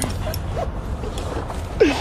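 Steady low rumble of a helicopter running, heard inside the cabin, with brief vocal sounds and the start of a laugh near the end.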